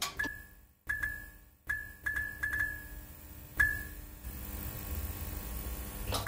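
Sound effect of a neon sign flickering on: sharp electric clicks at irregular spacing, several close together around two seconds in, each with a short high ping, over a steady low hum.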